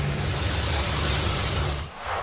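Pressure-washer jet hissing steadily as it sprays water over a car's roof, then cutting off just before the end.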